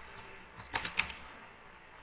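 Computer keyboard keystrokes while typing: a single key click, then a quick cluster of several clicks near the middle.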